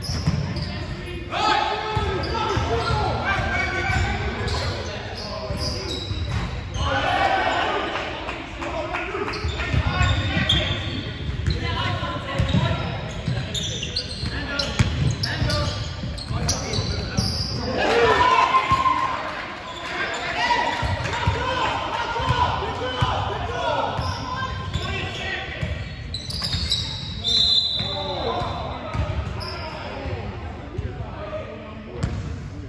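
Basketball game in a large gym: a basketball dribbled and bouncing on the hardwood court with repeated thuds, under players' voices and shouts that echo in the hall.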